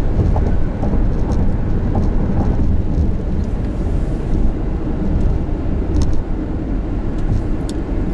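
Steady low rumble of road and engine noise inside the cabin of a car moving at highway speed.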